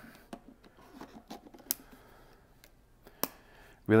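Canon EOS R battery and battery-compartment door being handled: a few light, sharp plastic clicks with faint rubbing between, the loudest click about three seconds in as the door is snapped shut.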